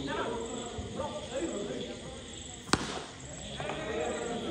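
A single sharp knock about three-quarters of the way through, over men talking.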